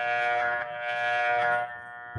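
Homemade growler armature tester's electromagnet humming, a steady buzzing electrical drone, while an armature is turned on it. An extra rougher buzz rides on the hum and drops away near the end, leaving the plain hum.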